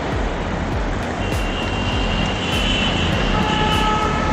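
Steady wind and road noise on a camera riding along on a bicycle, with motor traffic around. A steady high tone joins after about a second, and two lower steady tones come in near the end.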